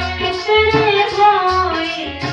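Sikh devotional kirtan: a woman sings a gliding melody over a harmonium's sustained chords, with tabla strokes underneath.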